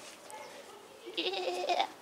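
A goat bleating once, a short call of about half a second a little past the middle.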